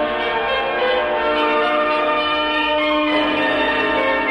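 Classical piano concerto recording, with the orchestra holding sustained chords that shift to new notes about three seconds in.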